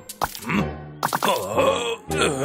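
A man's voice groaning and grunting in a few short strained bursts over background music, after a brief click near the start.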